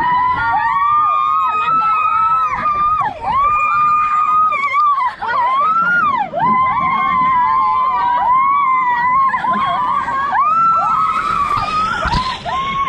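A group of riders screaming together in long, high-pitched overlapping screams as they speed down a water slide. Water rushing in near the end.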